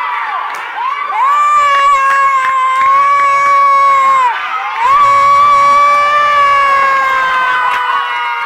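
A group of children shouting and cheering during a tug-of-war, with two long, held, high-pitched screams of about three seconds each.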